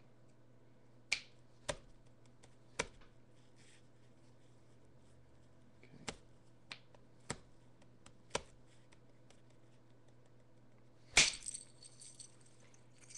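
Flint knapping: a hand-held knapping tool clicking sharply against the edge of a flint piece, several separate ticks spread out, then a much louder crack near the end as a flake comes away.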